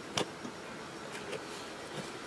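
Faint clicks and light rustling from gloved hands working soil around a rooted cutting in a small pot, the loudest click about a quarter second in, over a steady low hiss.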